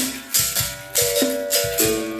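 Berimbau music: the steel string of the gourd-resonated musical bow is struck several times a second, its note switching between a low and a higher pitch. A caxixi basket rattle shakes along with the strokes.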